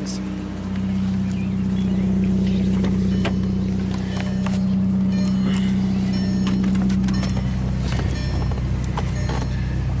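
Volkswagen 2.0-litre engine idling steadily, running normally with the intermittent crank-no-start fault not showing, with scattered clicks and knocks from the door and scan tool being handled.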